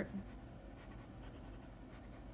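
Graphite pencil scratching faintly on sketchbook paper in short drawing strokes.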